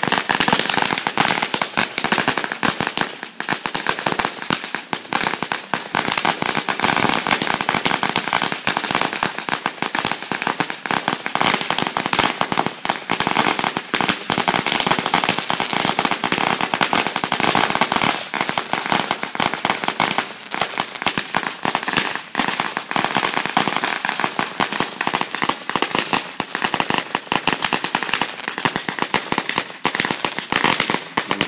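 Firecrackers going off on the ground in a long unbroken run: a dense rattle of small sharp bangs, many to the second.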